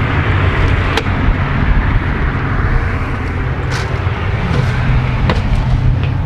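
Steady low rumble of nearby highway traffic. A few light knocks and clicks sound as someone climbs aluminium RV entry steps.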